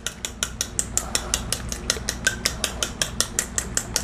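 A metal fork beating egg yolks in a ceramic bowl, clicking rapidly and evenly against the bowl, about seven strokes a second.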